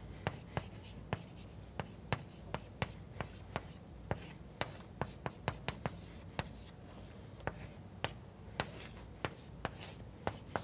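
Chalk writing on a blackboard: a quick, irregular string of sharp taps and short strokes as a formula is written out.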